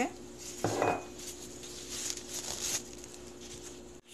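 A metal fork clinks once against a white ceramic bowl of food, with a short ring, about a second in, followed by a few faint taps, over a steady low hum.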